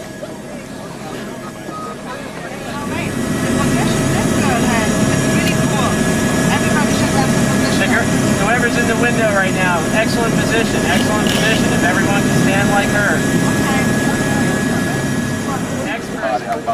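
Helicopter engine and rotor noise swelling up about three seconds in and then holding loud and steady, with a steady whine, and people's voices over it.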